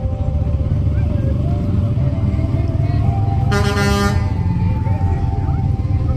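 A vehicle horn gives one blast of about half a second a little past the middle, over the steady low rumble of vehicles moving slowly past.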